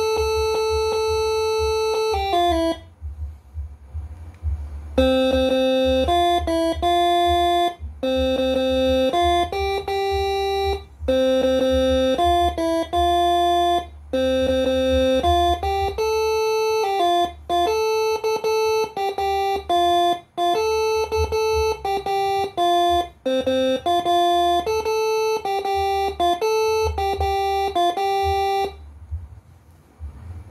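Multi-trumpet 'telolet' bus air horns played by a Moreno MS5 horn module: a melody of held notes, often two or three horns sounding together. The tune breaks off for about two seconds near the start and stops a little before the end.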